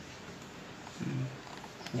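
A man's short, low, wordless "hmm" about a second in, over a steady faint background hiss.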